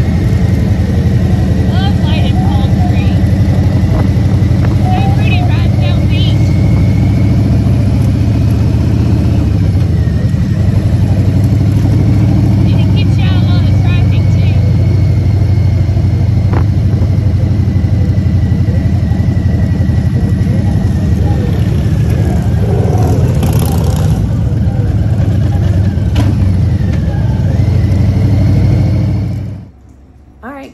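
Harley-Davidson V-twin motorcycle engine running steadily under way at low speed, heard from the rider's seat. The sound cuts off suddenly near the end.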